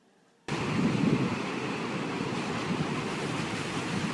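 A steady rushing noise with no tones in it, starting abruptly about half a second in and cutting off abruptly at the end.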